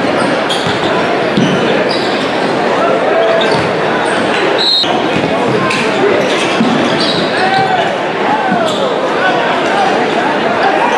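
Basketball dribbled on a hardwood gym floor, with sneakers squeaking and crowd voices echoing through the gym.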